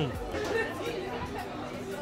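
Background chatter of people talking in a busy eatery, with no clear foreground sound.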